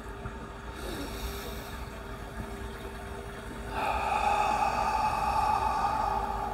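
A man's slow, deep breath in, heard as a faint hiss about a second in, then a longer, louder breath out starting about four seconds in and lasting about two seconds.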